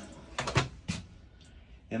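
RV toilet's foot-pedal flush mechanism clicking: a few sharp clicks about half a second in and another near one second, followed by a faint hiss.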